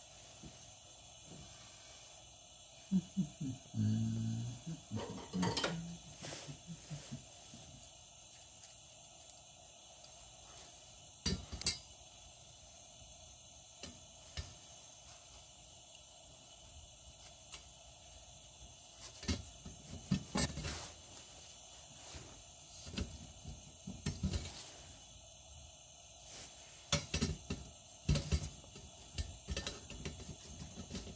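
Scattered metallic clinks and taps of hands and an adjustable wrench working the cage, bail and generator assembly of a Coleman 220E lantern. The assembly is stuck fast on the valve and won't twist loose.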